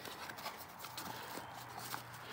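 Faint handling sounds of a small cardboard box being opened by hand: light taps, clicks and cardboard rustle. A low, steady hum comes in about a second in.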